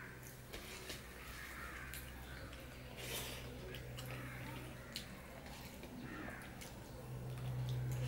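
Fingers mixing and squishing rice with curry on a steel plate: soft wet squelches with scattered small clicks against the metal. A steady low hum runs underneath.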